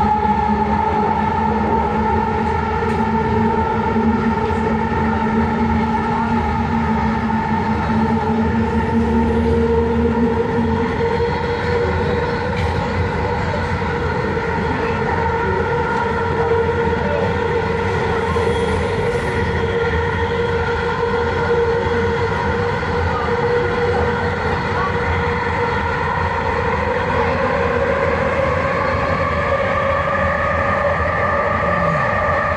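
Vancouver SkyTrain car running along its elevated guideway, heard from inside. It makes a steady rumble with a whine of several tones from its linear induction motors. The tones drift slowly in pitch: the lowest stops about a third of the way through, and the others rise near the end.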